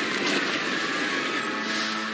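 Promo title-card sound effect: a loud, even whooshing noise as the title is revealed, with a held musical chord swelling in about a second and a half in.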